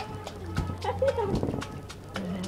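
Hands slapping and splashing in the shallow water of an inflatable kiddy pool, a quick run of sharp pats several times a second, with a baby's voice briefly sounding in the middle.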